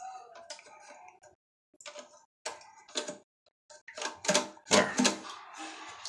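Plastic clicks and knocks from a Fluidmaster fill valve's cap being pressed on and twisted to lock onto the valve body. They come irregularly, sparse at first and loudest in a cluster about four to five seconds in.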